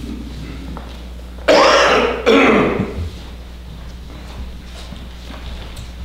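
A person coughing twice in quick succession, loud and sudden, about one and a half seconds in, over a steady low room hum.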